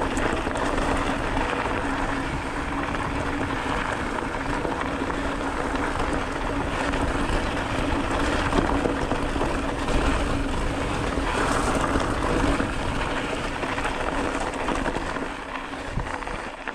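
Mountain bike rolling over a rough gravel dirt road: steady tyre crunch and frame rattle with a constant low hum, and wind rumbling on the camera microphone.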